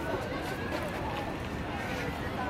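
Faint chatter of people's voices over outdoor background noise; the drums and cymbals are silent.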